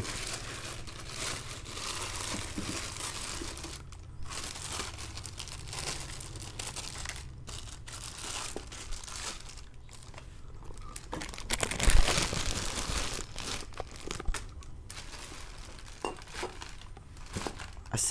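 Plastic wrapping crinkling and rustling as a cylinder head in a clear plastic bag is handled and unpacked, with a louder rustle about twelve seconds in.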